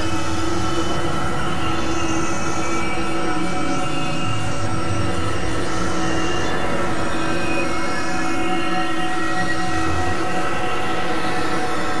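Experimental electronic drone music from synthesizers: a dense, steady wall of noise with several sustained tones held over it, and no beat.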